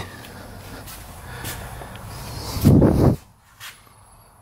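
A short, loud puff of breath close to the microphone, like a sniff or exhale, about three-quarters of the way through, over low steady background noise.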